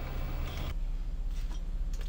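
Low steady background hum, whose tone drops and changes about a third of the way in.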